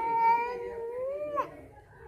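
A toddler crying: one long, high wail that falls away about a second and a half in.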